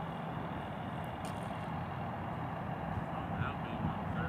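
Steady low engine rumble, like an idling vehicle or machinery, with faint distant voices near the end.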